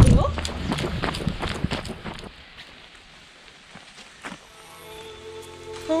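Running footsteps on a wet paved road, about three strikes a second, fading out over the first two seconds. Background music with held tones fades in near the end.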